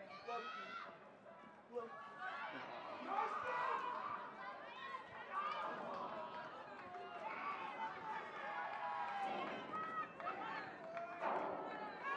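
Several voices shouting and calling out across a rugby field during open play, overlapping one another without a break, loudest about three seconds in.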